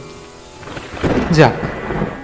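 Steady rain, with a rumble of thunder swelling in about halfway through.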